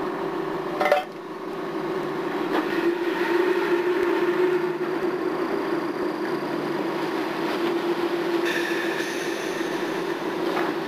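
A tugboat under way: a steady engine drone with churning stern wash. There is a sharp knock about a second in.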